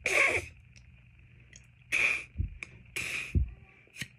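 Three breathy blows, each about half a second, into a homemade plastic drinking-straw whistle with a cut reed tip: mostly rushing air with only a faint high squeak, because the straw reed is not sounding properly. Two soft low thuds come after the second and third blows.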